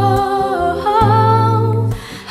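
Female vocalist singing long held notes of a slow worship song over sustained instrumental chords.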